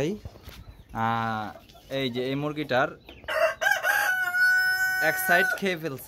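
Chickens calling, with a rooster crowing once: a long crow starting about halfway in and ending on a steady held note, after a few shorter calls.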